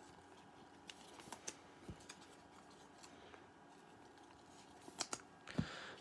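Faint handling of basketball trading cards: a few light clicks about a second in, two more around five seconds, and a brief soft slide just before the end, with near silence between them.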